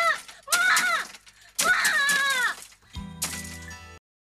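A woman shouting three times in a high, pleading voice, calling on her mother to open the door. About three seconds in, a low steady music sting begins, and it stops abruptly at the end.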